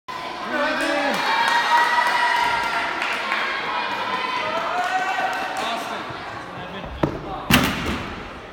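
Voices of spectators calling out and talking in a large gym. Near the end come two thuds about half a second apart, the second louder: the gymnast striking the vault springboard, then his hands hitting the vaulting table.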